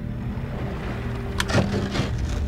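Outboard motor of a small cabin motorboat running at low speed, a steady low hum. A brief sharp sound comes about one and a half seconds in.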